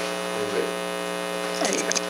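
Steady electrical mains hum: a constant low buzz with a ladder of higher steady tones above it, unchanging throughout.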